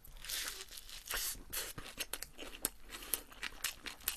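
Close-miked chewing of a toasted street-toast sandwich filled with shredded cabbage: a run of irregular crisp crunches and small clicks.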